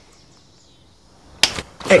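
Low room tone, then about one and a half seconds in a single sudden, sharp swish of a quick hand movement at a man, a test of his reflexes. A startled man's 'uh' follows right after.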